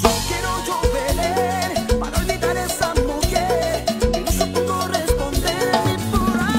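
Salsa music with bass and melody, with timbales and cowbell struck with sticks and played live along with it.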